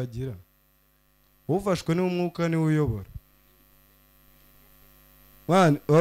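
A man's voice into a handheld microphone in short stretches, about a second and a half in and again near the end. In the pause between, a faint steady electrical hum.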